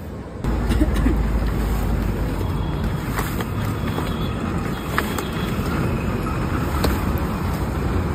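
Metal kulfi vessel being turned by hand inside a large clay matka packed with ice: a steady low grinding rumble with a sharp click about every two seconds.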